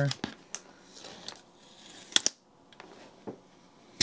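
Fingers picking at and peeling a paper sticker off a cardboard box: a few small scratches and clicks, with one sharper click about two seconds in.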